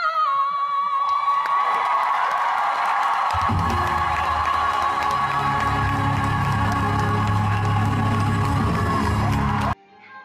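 Live stage musical: a belted sung note ends just after the start. Audience cheering and applause then rise over the orchestra's loud, sustained closing chords, and all of it cuts off abruptly near the end.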